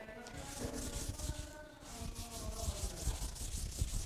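Faint scratching and rubbing, typical of writing on a board, in short irregular strokes.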